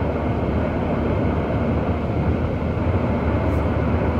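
Steady road and wind noise inside a moving car's cabin at highway speed, an even rumble with no breaks.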